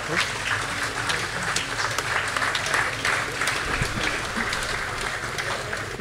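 Audience applauding, a dense patter of handclaps that starts at once and carries on steadily, easing a little near the end.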